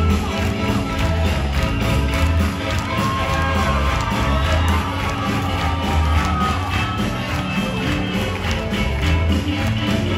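Loud live band music in a hall, with a pulsing bass beat, and the audience cheering and clapping over it.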